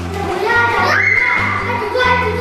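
Children shouting and playing over background music. Their voices come in about half a second in and are the loudest part, over the music's steady low notes.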